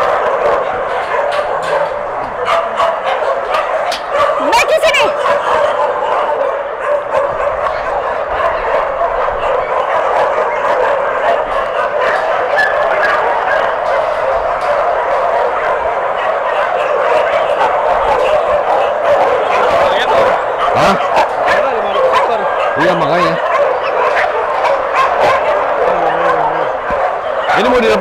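A large pack of dogs barking together, a dense, continuous din of many overlapping voices with no pauses.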